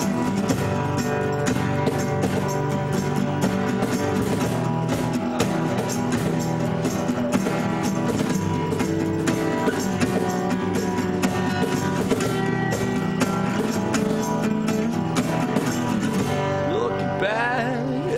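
Acoustic band playing an instrumental passage: strummed acoustic guitars over a steady beat slapped on a cajón. A singing voice comes in near the end.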